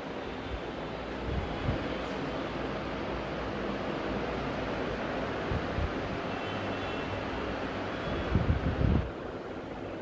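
Wind and handling noise on a phone microphone: a steady rushing, with a few soft low thumps and a louder low rumble about eight seconds in.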